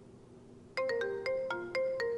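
Mobile phone ringtone starting about three quarters of a second in: a marimba-like melody of quick struck notes, about four a second, each ringing briefly.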